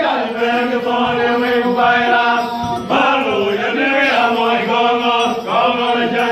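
A group of men singing a traditional Dinka song together, with long held notes in phrases that start afresh about every three seconds.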